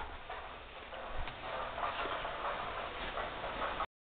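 Faint room noise with a few light knocks and clicks; no motor is running.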